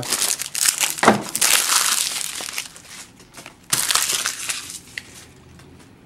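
Foil wrapper of a Panini Certified football card pack being torn open and crinkled by hand. The crinkling is loudest over the first two seconds or so, comes back in a short burst about four seconds in, then tapers off.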